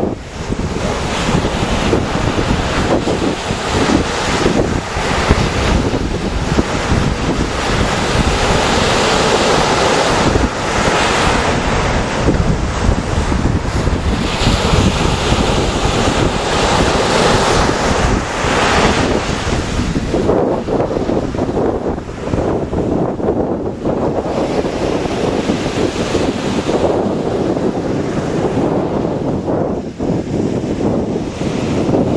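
Wind buffeting the microphone over the wash of surf breaking on the shore, rising and falling in gusts.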